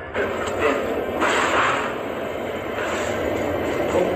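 Soundtrack of a horror short playing back: a sudden noisy rush, like a whoosh effect, over music. It swells to its loudest about a second in.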